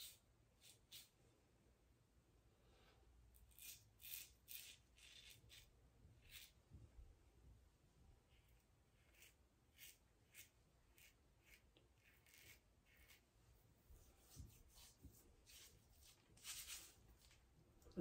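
Faint, short scraping strokes of a Wolfman WR2 safety razor with an Astra SP blade cutting stubble through shaving lather, coming in short runs with pauses between them.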